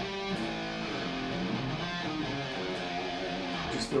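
Schecter Sun Valley Shredder electric guitar being played: a strummed chord just after the start, then ringing notes and chords that change every fraction of a second.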